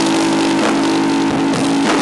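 Live indie/emo rock band playing loud: electric guitars holding distorted chords over drums and cymbals, with a few sharp drum hits in the second half.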